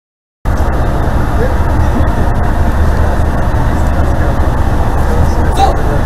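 Steady loud rumble and hiss of wind and ship machinery on a frigate's open deck, cutting in suddenly after a moment of silence. A short pitched call sounds near the end.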